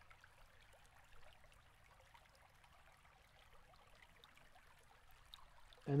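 Near silence: faint steady room hiss with a few small, soft ticks.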